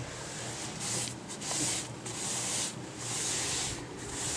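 A cloth rag rubbing wood stain onto a wooden desktop molding: a run of about five hissing wiping strokes, each under a second.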